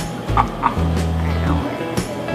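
Background music with a repeating bass line. Two short, higher-pitched sounds come about half a second in.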